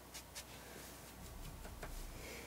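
Faint scratchy brushing of a nearly dry watercolour brush skimmed across watercolour paper, laying down dry-brush grass texture.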